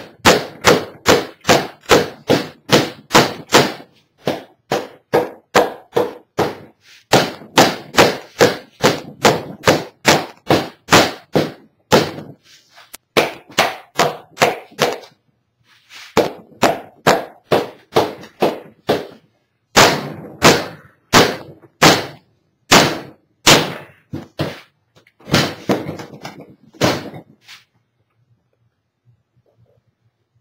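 Mallet blows on a large cast canopy mold, struck at about three a second in runs with short pauses between them, stopping a few seconds before the end. The casting is stuck on its plug, and the blows are meant to knock it loose.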